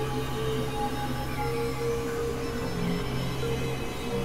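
Experimental electronic drone music on synthesizers: a steady low drone under held higher tones that change every second or so, over a noisy hiss.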